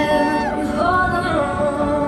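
A pop song with vocals: a singer holds a long note that slides down about half a second in, then starts a new held phrase over the accompaniment.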